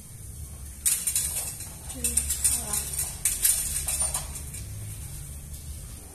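Wire clothes hangers clinking and rattling against a metal drying rack, a quick run of light metallic clicks from about a second in until about four seconds.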